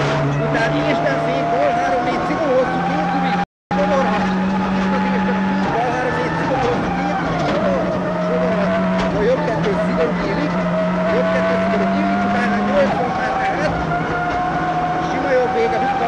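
Ford Focus WRC rally car driven flat out on a tarmac special stage, heard from inside the cockpit: its turbocharged four-cylinder engine runs hard, stepping in pitch through gear changes, under a high whine that slowly rises. All sound cuts out briefly about three and a half seconds in.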